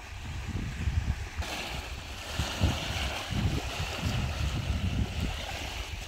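Wind-driven small waves lapping at a lakeshore, an even watery hiss that grows stronger about one and a half seconds in, with gusts of wind buffeting the microphone throughout.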